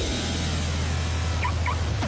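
A car engine running with a steady low, rapidly pulsing burble, and two short high squeaks near the end.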